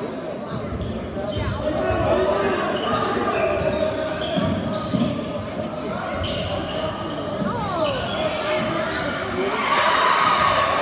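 A basketball being dribbled on a hardwood gym floor, with short sneaker squeaks from players cutting on the court and spectators' voices echoing through the hall. The noise swells near the end as the players fight for a rebound.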